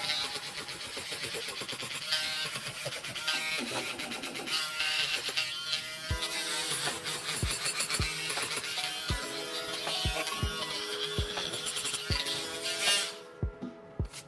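Small handheld rotary tool with a thin spinning disc working the edge of a phone's metal mid-frame: a high buzzing whine that cuts off about 13 seconds in. Background music with a bass beat comes in around six seconds.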